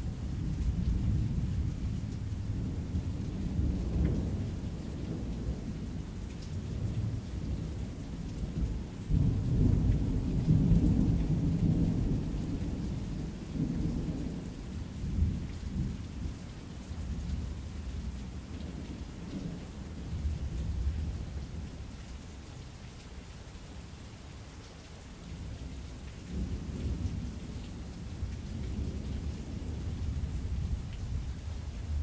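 Thunderstorm ambience: steady rain with low rolling thunder that swells and fades, loudest about a third of the way in.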